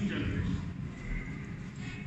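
Indistinct voices over a low rumble of background sound in a large hall.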